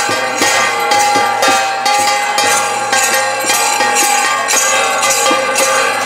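Devotional kirtan music with small metal hand cymbals (kartals) struck in a steady beat of about two strikes a second, over drum strokes and a sustained held melody.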